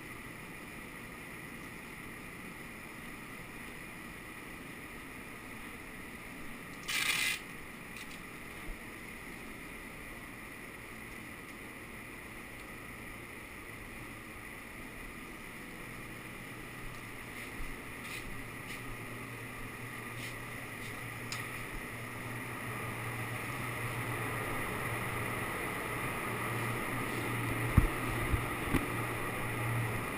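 A blower runs with a steady rush and a low hum that grows louder in the second half. A short sharp hiss comes about seven seconds in, and a few clicks near the end.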